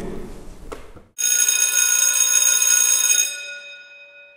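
A bright, bell-like ringing sound effect from the outro animation. It starts suddenly about a second in, holds steady for about two seconds, then fades out.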